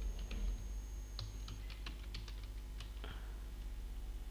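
Computer keyboard being typed on, a quick run of about a dozen key clicks over the first three seconds, above a low steady hum.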